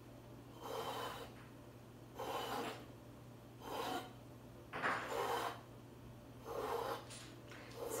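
A plastic scraper dragged through wet acrylic pouring paint on a stretched canvas, scraping the paint off in about five strokes, roughly one every second and a half.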